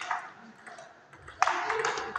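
Table tennis rally: the plastic ball is struck by the bats and bounces on the table, with the sharpest hit about one and a half seconds in, each one echoing in the hall.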